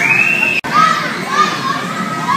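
Young children squealing and shouting at play, starting with one long high squeal. A string of shorter high calls follows. The sound drops out for an instant just after half a second in.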